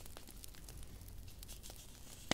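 Faint, scattered light clicks and rustling of fingers handling a handmade prop dragon egg with a cracked, textured shell.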